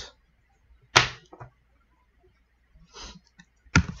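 Computer keyboard keystrokes while typing new lines of code: one sharp, loud click about a second in, followed by a lighter tap.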